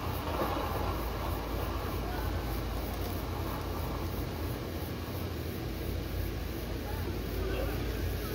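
Steady low hum and rumble of outdoor background noise, with faint voices near the start and again near the end.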